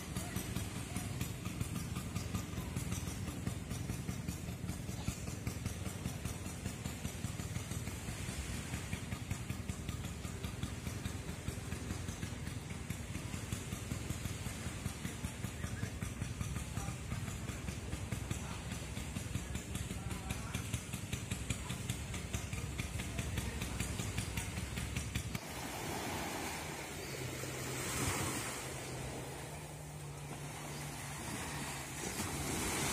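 A motorcycle engine running steadily with a low, fast pulsing, cutting off abruptly about 25 seconds in. Wind and surf noise follow near the end.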